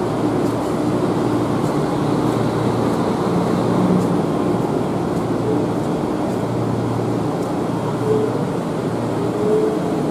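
A stationary 1900 series streetcar's rooftop air conditioner and onboard equipment running with a steady hum.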